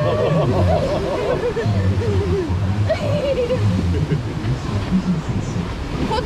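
Rushing water of a river rapids ride around the raft, with a voice making long, wavering, sung-like sounds over it in the first couple of seconds and again briefly a second later.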